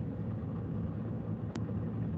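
Steady low background rumble picked up by a video-call microphone, with a single sharp click about one and a half seconds in.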